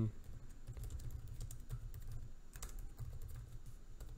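Computer keyboard typing: a run of key clicks that come in quick clusters with brief pauses between them.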